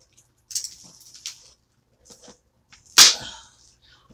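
Plastic paint palette and packaging being handled: a few short rustles and crinkles, then one loud sharp snap about three seconds in.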